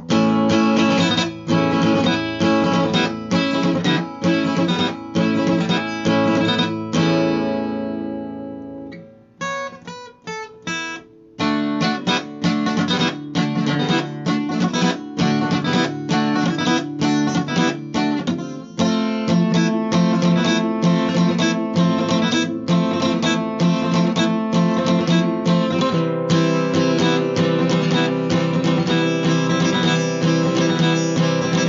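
Cutaway acoustic guitar strummed in chords. About seven seconds in, a chord is left to ring and fade, a few single notes are picked, and then steady strumming resumes.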